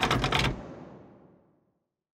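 Logo sting sound effect: a quick run of sharp clicks in the first half-second, ringing away over about a second into silence.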